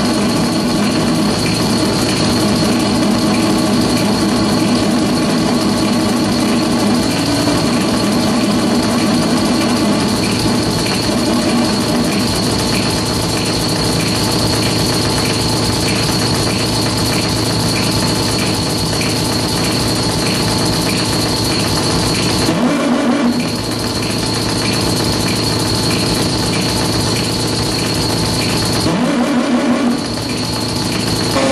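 Harsh noise music from circuit-bent electronic hardware played live: a loud, dense buzzing mass with a steady high whine over it. It thins out abruptly for about a second three quarters of the way through, and again near the end.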